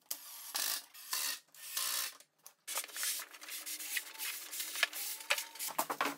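Cordless driver running screws into plywood in a series of short bursts with brief gaps between them, a steady motor whine under the longest run in the second half.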